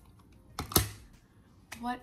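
A single sharp click about three quarters of a second into otherwise quiet room tone: makeup items being handled and set down after the blush.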